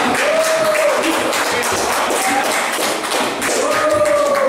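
Rapid, irregular sharp taps and knocks, with a drawn-out pitched voice-like sound early on and again near the end.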